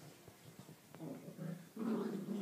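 Dog growling, a low sustained growl starting about a second in.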